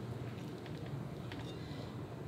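Water poured slowly from paper cups onto ceramic plates, heard only as faint trickles and a few small ticks over a steady low room hum.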